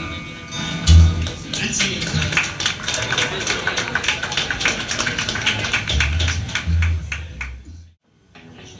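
Live rockabilly trio on acoustic rhythm guitar, electric lead guitar and upright double bass, playing fast strummed chords over heavy double-bass notes. The sound fades and cuts off suddenly at the end.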